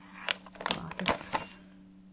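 Plastic snack bag crinkling as it is handled and stood upright on a table: a quick run of crackles lasting about a second and a half.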